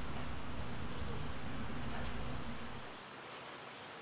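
Steady background hiss with a low hum, which drops away about three seconds in.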